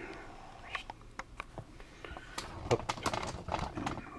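Irregular light clicks and knocks of a handheld video camera being handled while it zooms in, growing busier in the second half.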